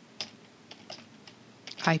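A handful of separate, light keystrokes on a computer keyboard as an IP address is typed.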